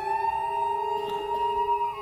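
Bowed cello in long sustained notes, several pitches ringing together, the notes sliding slightly up in pitch at the start.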